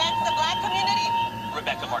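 Speech that the transcript did not catch, over a steady high-pitched hum that stops about three quarters of the way through.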